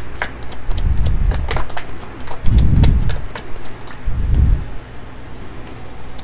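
A deck of tarot cards being shuffled by hand: a quick run of card clicks and snaps, broken by three dull thumps, then it quietens over the last second or so.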